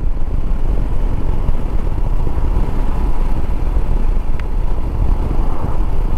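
Shineray SHI 175 motorcycle's single-cylinder engine running steadily while being ridden, under a steady low rumble.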